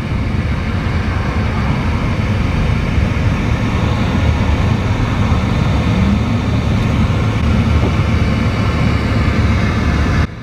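Steady low rumble of a car's engine and tyres heard from inside the cabin while rolling slowly, with a brief rising tone about six seconds in.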